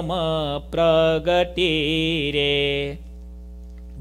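A man chanting a devotional verse unaccompanied, in long held melodic notes that break off about three seconds in.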